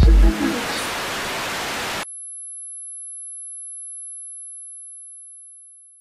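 Electronic music with a beat cuts into a hiss of TV static that stops abruptly about two seconds in. It leaves a single high-pitched steady tone that fades out near the end: a sound effect of an old CRT television switching off.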